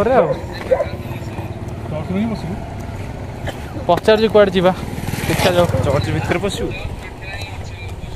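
Men talking in short bursts over the steady low running of a motor vehicle's engine close by, which grows louder for a second or two past the middle.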